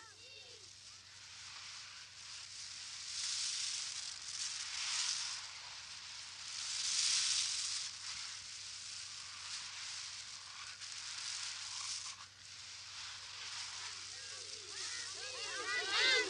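A rushing, hissing noise with no pitch that swells and fades several times, loudest about seven seconds in.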